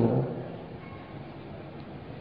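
A man's voice trails off at the end of a phrase, then a pause holds only faint, steady background hiss from the sermon recording.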